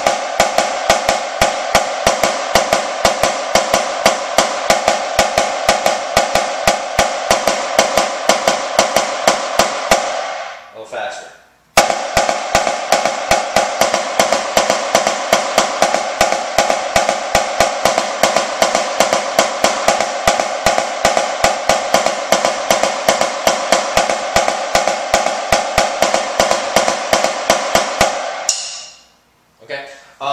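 Premier marching snare drum played with wooden sticks: a fast, even run of rebounded double strokes (the double-beat exercise), with the head ringing high. The playing comes in two long stretches, broken by a pause of about a second near the middle, and stops a little before the end.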